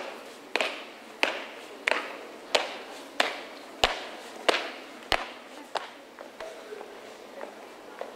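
Marching footsteps: shoes striking paved ground in a steady rhythm of about three steps every two seconds, loudest in the first half and fading away after about six seconds.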